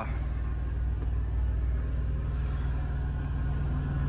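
Steady low diesel drone heard inside a parked International semi-truck's cab, from the truck's auxiliary power unit (APU), which runs so the main engine need not idle to heat or cool the cab.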